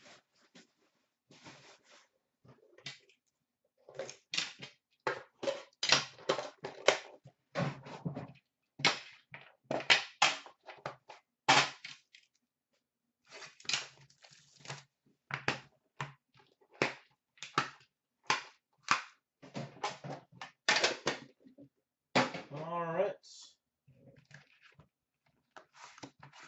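Rapid, irregular clicks and knocks of a metal trading-card tin being handled and opened, its lid taken off and the card box inside lifted out. A short wavering, voice-like hum near the end.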